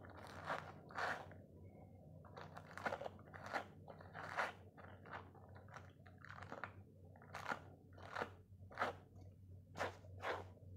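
Short rasping strokes of grooming a dog's curly coat by hand with a slicker brush and wet wipes, about one stroke a second, irregularly spaced, over a faint steady low hum.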